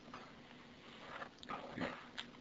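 Faint room tone with two soft, short sounds in the second half.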